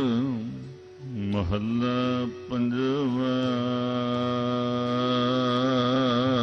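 Gurbani kirtan singing: a voice holds long, wavering notes, breaking off briefly twice between phrases.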